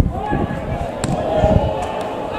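Players' voices calling out on a football pitch, with one sharp knock of a football being kicked about a second in.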